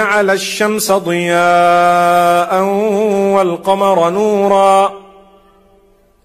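A man reciting a Quranic verse in Arabic in a chanted, melodic style with long drawn-out notes. The recitation ends about five seconds in, and its echo fades away.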